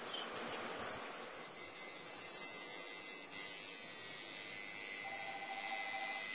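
Tattoo machine buzzing steadily under a constant hiss while lining an outline in skin with a tight 5-round liner needle.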